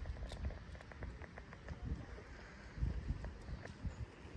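A corgi's paws and a person's footsteps on a paved walkway: small irregular clicks and taps over a low, uneven rumble.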